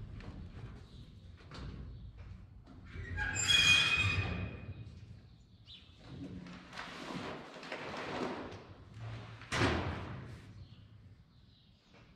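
Scuffing and handling noises as a man climbs onto a John Deere 1560 grain drill and works with bags of seed soybeans at its hopper. There is a short squeal about three and a half seconds in, a stretch of rustling and scraping after that, and a sharp knock just before ten seconds.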